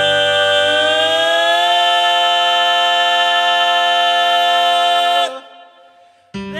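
A male singer holds one long note in a live country-gospel ballad, rising a little in pitch and then holding steady as the band drops away beneath him. The note cuts off about five seconds in, leaving a brief silence.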